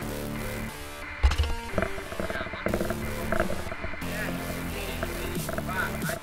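Background music with sustained chords, and a sudden heavy thump about a second in.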